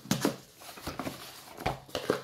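Cardboard box being pulled open by hand: a few short, sharp rustles and scrapes of cardboard as the taped flap comes free and the lid is lifted, the loudest just after the start and another near the end.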